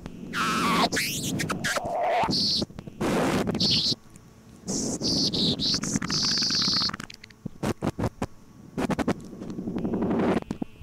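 Experimental musique concrète built from several tracks recorded on tape, with no samples or effects. Abrupt cuts jump between noisy fragments and high whistling tones, with a falling glide near the start; the second half thins out to sparse clicks.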